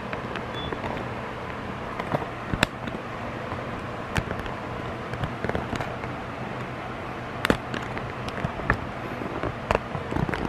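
Handling noise from a phone camera being held and moved about: a scatter of sharp clicks and light knocks at irregular intervals over a steady low hiss, the clearest about two and a half and seven and a half seconds in.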